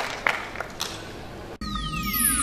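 The last few scattered claps of applause dying away, then, about a second and a half in, an abrupt cut to electronic ident music: a deep bass bed with a long tone sliding steadily down in pitch.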